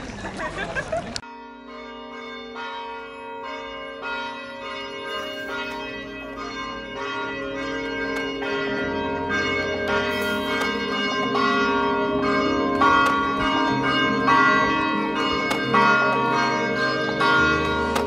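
Splashing fountain water for about a second, then church bells ringing in a quick run of strikes whose tones hang on and overlap. The bells are blended with music that swells in under them, a low bass entering about halfway.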